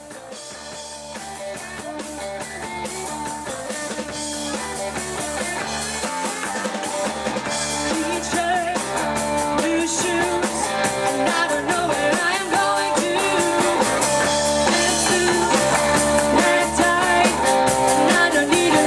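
Live rock band playing electric guitars and drum kit, fading in and growing steadily louder.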